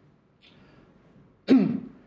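A man clears his throat once, sharply, about one and a half seconds in, after a faint intake of breath.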